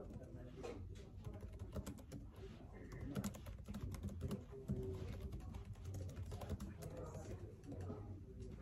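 Faint typing on a computer keyboard: a quick, irregular run of soft key clicks.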